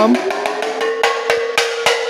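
Rototoms struck with drumsticks: a run of quick strikes, about three a second, over a ringing drum tone that rises slightly in pitch in the first half second and then holds steady.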